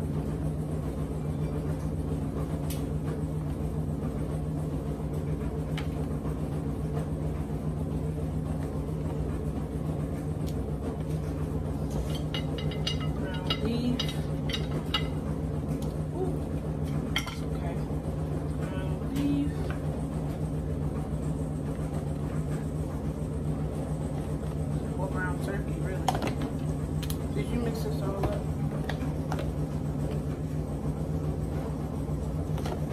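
A steady low hum throughout, with soft handling noises and a few light clicks and knocks of a plastic container as crumbled ground beef is scooped by hand and pushed into bell peppers. There is a sharper knock about 26 seconds in, and faint voices in places.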